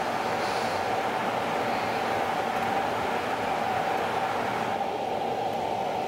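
Steady, unchanging noise with a strong hum in the middle register, like a fan or ventilation running.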